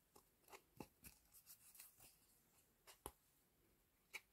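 Near silence with a few faint ticks and rustles as thin waxed threads are lifted out of and pressed into the slots of a foam kumihimo braiding disk. The clearest tick comes about three seconds in.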